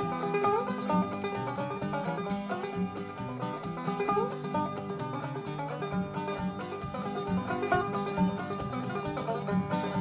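Five-string banjo played drop-thumb (clawhammer) style on an old-time instrumental, with an acoustic guitar keeping a steady bass-note rhythm underneath.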